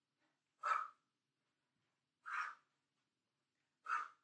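A woman's short, forceful breaths, three of them about a second and a half apart, one with each lunge-and-knee-drive rep.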